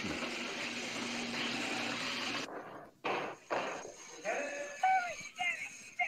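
Film soundtrack: electromechanical telephone-exchange switching machines clacking, a steady rattling that cuts off about two and a half seconds in. A few sharp clicks follow, then the caller's voice in short bursts near the end.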